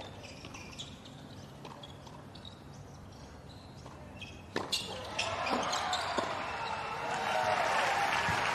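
A tennis ball bounced a few times on a hard court before a serve, then a sharp crack of the racket on the serve about four and a half seconds in, followed by a few more racket hits in a short rally. Crowd noise rises toward the end.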